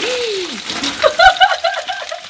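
A person's voice gives one falling 'ohh' at the start, then breaks into a quick run of giggling laughter about a second in, over faint sizzling of mushrooms in a hot frying pan.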